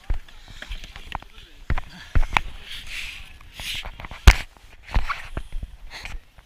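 Irregular knocks and thumps of handling noise on a wearable action camera as a surfboard is handled and carried across the sand. The loudest knock comes about four seconds in, with short hissy rustles between.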